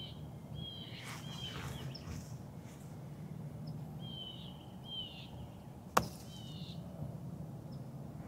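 A putter strikes a golf ball once, a single sharp click about six seconds in. Short high bird chirps come and go in the background.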